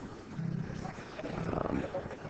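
Low, muffled laughter from spectators in a pool hall, heard twice briefly.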